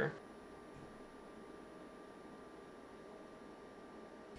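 Near silence: quiet room tone with a faint steady high tone.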